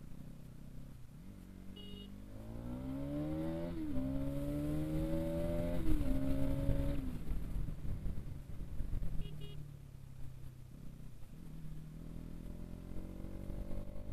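Bajaj Pulsar NS200's single-cylinder engine accelerating hard through the gears. Its pitch climbs, drops sharply at two upshifts about four and six seconds in, holds, then eases off and climbs again near the end.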